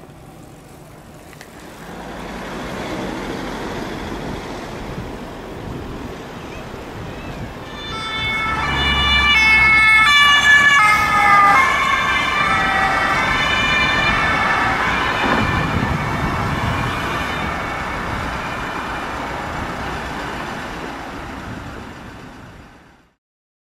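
Fire-brigade van's German two-tone siren (Martinshorn) approaching over road traffic noise about eight seconds in. It is loudest as it goes by, then drops in pitch and fades away.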